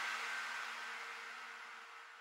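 The dying tail of an electronic music track's last hit: a sustained low chord under a hissy wash, fading away steadily.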